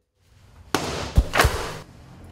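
A sudden crash as something is shoved or knocked aside, with two heavy thuds about a quarter second apart.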